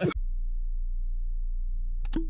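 A steady low hum with no other sound, beginning with a brief crackle at the start.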